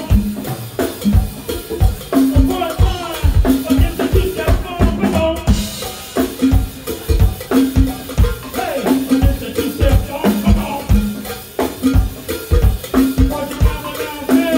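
A live band playing: a drum kit keeps a steady beat over a repeating bass line, with horns and a shaken tambourine on top.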